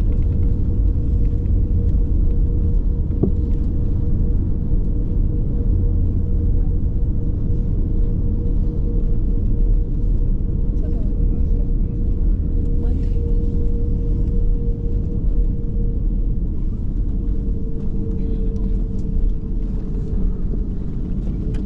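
Cabin noise of an Airbus A330-900neo rolling along the runway just after touchdown, spoilers up: a loud, steady rumble from the wheels and airframe, with a steady hum running through it, easing slightly near the end.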